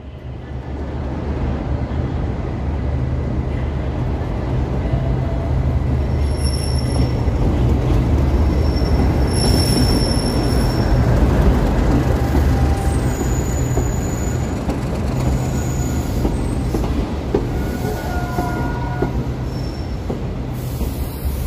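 Class 37 diesel locomotive, with its English Electric V12 engine running, hauling coaches past with a steady low rumble. Several short high-pitched wheel squeals come through over it.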